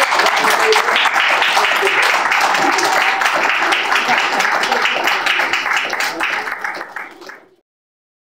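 Audience applause, many people clapping, with a few voices mixed in; it tails off near the end and cuts off abruptly about seven and a half seconds in.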